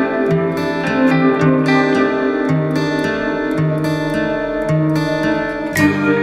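Instrumental music: acoustic guitar plucking a run of notes over sustained chords, with a fuller chord struck just before the end.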